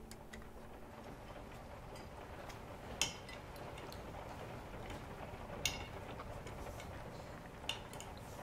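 Cutlery clinking against dinner plates three times, sharp and brief, over quiet room tone.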